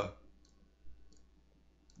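A few faint, sharp computer mouse clicks.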